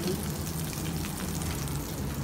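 Butter sizzling steadily on the hot grill plate of a combination hot pot and grill cooker, a fine, even crackle.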